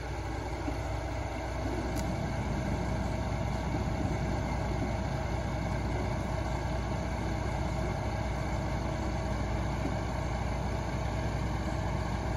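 Log truck's diesel engine idling steadily.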